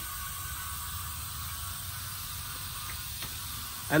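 Powder coating gun spraying powder on compressed air: a steady hiss, with a low hum underneath.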